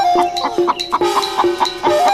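Chicken clucking in short bursts over background music.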